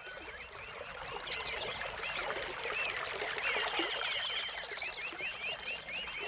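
Nature ambience that fades in over the first second: many quick, overlapping chirps over a steady rush of running water.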